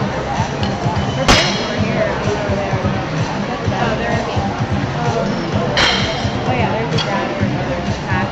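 Background music and crowd chatter in a gym, broken by three sharp clanks, about a second in, near six seconds and at seven seconds: loaders changing the plates and collars on a weightlifting barbell.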